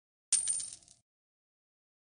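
A short, bright metallic chime sound effect from an end-card animation as the like, coin and favourite icons light up. It starts sharply about a third of a second in, holds a high ringing note and dies away within a second.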